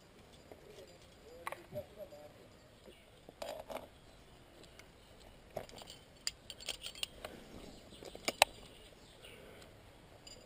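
Metal climbing gear clinking and clicking: a quickdraw's aluminium carabiners rattling against each other and the bolt hanger as it is handled and unclipped, in a quick run of clinks with one sharp click near the end.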